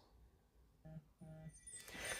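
Near silence: room tone, with two faint, brief tones about a second in.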